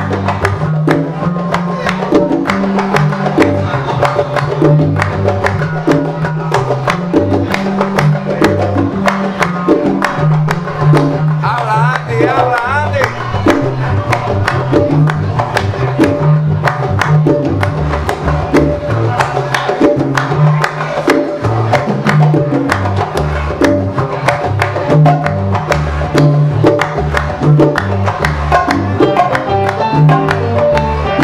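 A live salsa band playing: a dense, steady hand-percussion rhythm over a prominent bass line that steps from note to note.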